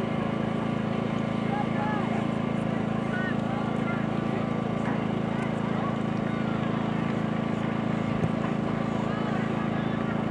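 Steady low hum with faint, distant shouts and calls of soccer players across the field. A single short thump comes about eight seconds in.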